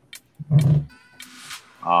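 A man's short, low-pitched vocal groan about half a second in, followed by a breathy exhale, just before he speaks again.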